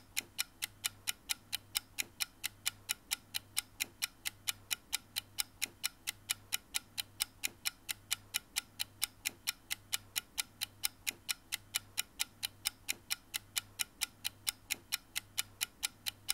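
Steady, even ticking like a clock, about four ticks a second, over a faint low hum that pulses on and off.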